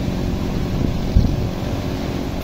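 A steady low rumble, with a single thump just over a second in.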